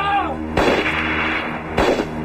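Two loud pistol shots about a second and a quarter apart, each a sharp crack with a short echo, played over steady dramatic background music.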